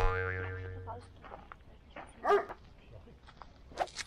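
A cartoon-style boing sound effect, a pitched tone that fades out over about a second. A little after two seconds in comes a short dog-like yelp, and there is a sharp click just before the end.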